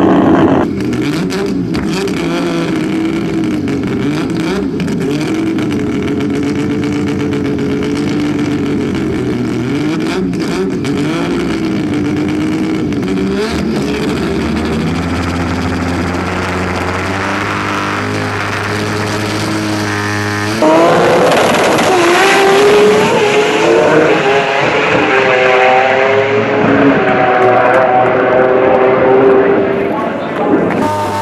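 Turbocharged 20B rotary engine of a drag car running at low revs at the start line, its pitch wavering. About two-thirds of the way through it launches at full throttle, much louder, and its pitch climbs in steps through the gear changes.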